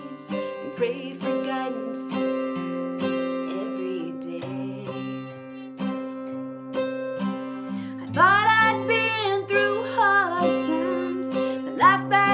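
Acoustic guitar playing a steady country accompaniment while a woman sings. The voice drops out for a few seconds mid-way, leaving the guitar alone, and comes back in about two-thirds of the way through.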